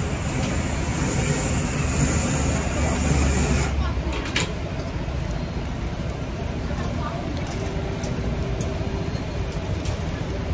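Busy street ambience: a steady low rumble of traffic with faint background voices. The rumble eases about four seconds in, and there is a single click shortly after.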